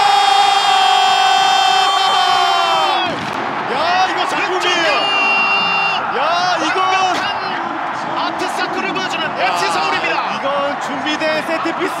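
A football TV commentator's long, high shout as the goal goes in, held for about three seconds and falling away at the end. It runs over a stadium crowd cheering and is followed by excited, shouted commentary.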